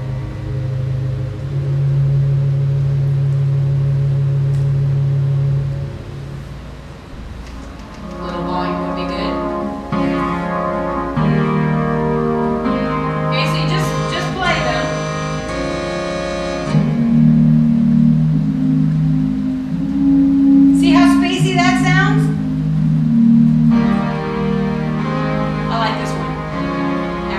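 Roland electronic organ sounding a synth lead voice played as chords: a single low note held for a few seconds, then a series of sustained, changing chords.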